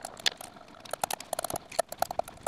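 Small hand roller pressing a self-adhesive 100-micron abrasive sheet down onto a glass plate. It gives a run of quick, irregular clicks and crackles as it rolls back and forth.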